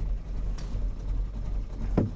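Austin A35's 948cc A-series engine idling with a steady low hum. There is a brief rustle about half a second in and a sharp click at the very end.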